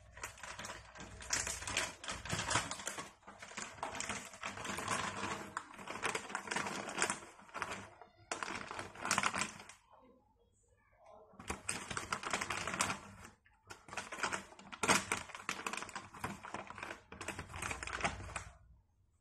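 A wooden spatula stirring and tossing creamy fusilli in a frying pan: a dense clatter of small clicks and scrapes in several spells, with short pauses about eight and ten seconds in.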